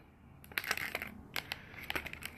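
Clear plastic blister pack crinkling and crackling as it is handled, a run of small irregular clicks starting about half a second in.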